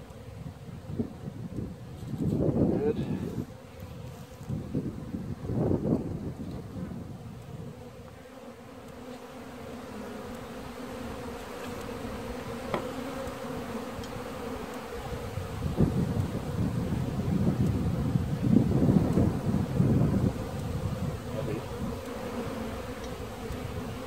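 Honeybees buzzing steadily around an open hive, a calm colony's hum. Several louder low rumbles on the microphone come about two seconds in, about six seconds in, and again for several seconds past the middle.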